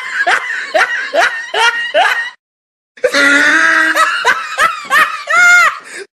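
A young man laughing loudly in quick, repeated 'ha-ha-ha' bursts, each falling in pitch, in two bouts split by a short silent gap about two and a half seconds in. The second bout ends on one longer, drawn-out laugh.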